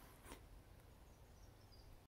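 Near silence: faint outdoor ambience, with a soft click about a third of a second in and a few faint high chirps in the second half.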